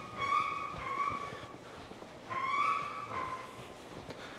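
A person whistling a few notes, in two short phrases with a slight dip in pitch at the end of each.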